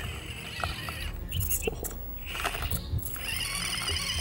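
Axial SCX24 Jeep Gladiator mini RC crawler creeping up steep rock: its small electric motor and drivetrain whining steadily, with a few faint knocks of the tyres on the rock.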